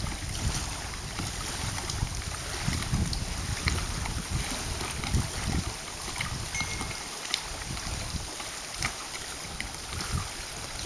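Wind gusting on the microphone in low rumbling buffets, over small lake waves lapping at the shore and dock with a soft hiss and faint splashes.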